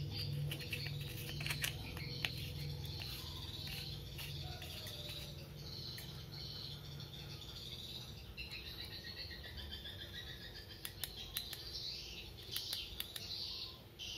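Birds chirping and twittering in the background over a steady low hum, with a few sharp clicks, likely from a flashlight being handled as a battery is fitted.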